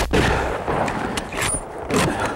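A single rifle shot from a Browning .300 Winchester Magnum, a sharp crack at the very start whose report rumbles away over about half a second.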